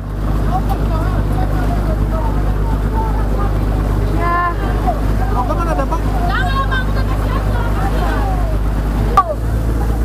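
A boat's engine running with a steady low hum, with shouted voices over it around the middle.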